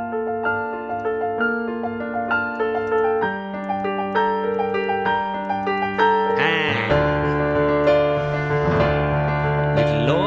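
Piano playing a minor-key movie theme built on the Andalusian cadence: a melody in thirds, high and soft, over held bass notes. About seven seconds in, a deep bass octave comes in and the playing gets louder.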